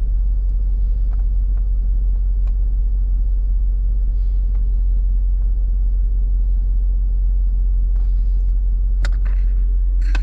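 Steady, loud low rumble inside a car's cabin, with a few faint clicks as something is handled near the camera.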